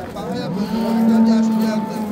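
A cow mooing: one long call that rises at first, starts about half a second in and lasts over a second, with men's voices in the background.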